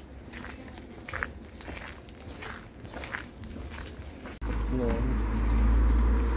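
Footsteps crunching on a gravel path at an easy walking pace. About four seconds in, the sound cuts abruptly to a much louder, steady low rumble.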